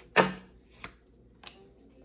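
Tarot cards being laid down on a table: one sharp slap a moment in, then two light taps.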